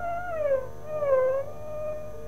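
Carnatic music in raga Kambhoji: a violin line slides down in two ornamental curves (gamakas), then settles into a held note over a faint steady drone.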